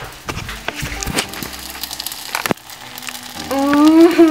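Porridge that has boiled over, sizzling on the hot stove, with scattered clicks and knocks and one sharp knock about two and a half seconds in. A rising, voice-like sound comes in near the end.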